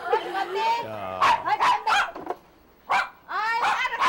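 Small Chihuahuas yapping in a run of short, high barks starting about a second in, with a brief pause midway. They are barking at a customer who means to take goods without paying.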